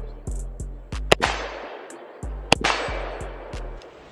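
Two AR-15-style rifle shots, .223, about a second and a half apart, each with a trailing echo, over edited-in beat music with a repeating deep bass line.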